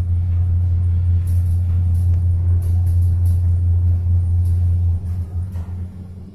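Hyundai elevator car travelling up between floors: a loud, steady low rumble inside the cab, with faint light ticks over it. The rumble drops away about five seconds in as the car slows for the next floor.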